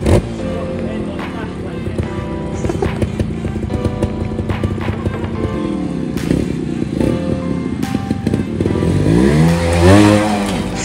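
Trials motorbike engine revving up with a rising pitch near the end, as the bike climbs a bank, over background music that runs throughout.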